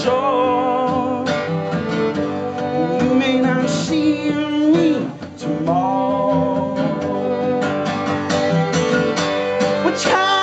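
Live band playing an instrumental passage: a fiddle carries a wavering melody over strummed acoustic guitar, with a brief drop in loudness about halfway through.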